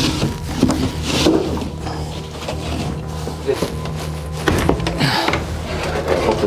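Background music with a steady low drone, over a loose wooden wall panel being pulled aside: two short scrapes, about a second in and near the end, with a few knocks between.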